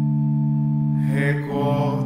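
A held instrumental chord, steady and unchanging, that shifts about a second and a half in. A singing voice comes in over it about a second in, chanting the start of a liturgical antiphon in Portuguese.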